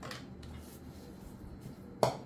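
Quiet kitchen room tone: a low steady hum with faint handling sounds and a brief soft sound at the start, as banana leaves and yuca masa are handled for pasteles.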